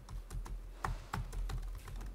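Typing on a computer keyboard: an irregular run of key clicks, about five a second, as a line of a udev rule is entered.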